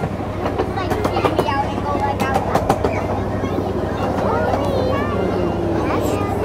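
Miniature ride-on train running along its track: a steady low hum with a run of sharp clicks from the wheels on the rails, busiest in the first half.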